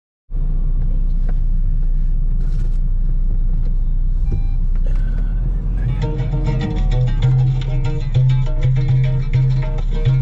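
Low, steady car rumble heard from inside the cabin, with a few faint clicks; about six seconds in, music starts playing with a strong, repeating bass line.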